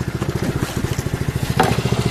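A fishing boat's engine running with a steady, rapid low pulsing.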